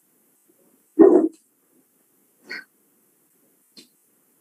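A dog barks once, loud and short, about a second in, followed by a fainter, higher-pitched sound about a second and a half later.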